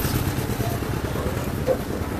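Steady low rumble of street traffic, with a motorcycle engine running on a rough road and a few faint voices near the end.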